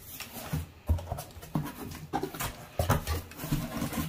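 Cardboard box flaps and crumpled packing paper being pulled open by hand: a string of short rustles and knocks, about one every half second to second.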